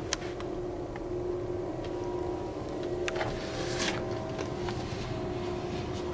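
A steady mechanical hum with a faint held tone, with a few light clicks near the start and a brief rustle a little past the middle.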